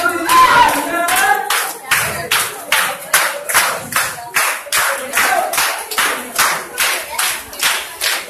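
A group of people clapping hands together in a steady rhythm, about three claps a second. Singing voices are heard with the clapping in the first second, then the clapping carries on alone.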